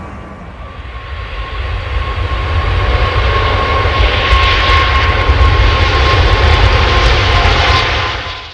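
Four-engine Airbus A380 jet airliner flying low overhead. Its engine noise grows louder over the first three seconds and then holds, with a deep rumble under a steady high whine.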